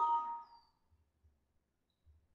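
Computer alert chime: two steady tones at once, fading out within about half a second. It is the Windows system alert signalling an error dialog.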